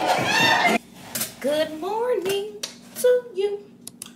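Party music and voices cut off abruptly in the first second. Then a few sharp clinks of a plate and dishes being handled on a kitchen counter, with a woman humming wordlessly in rising and falling tones.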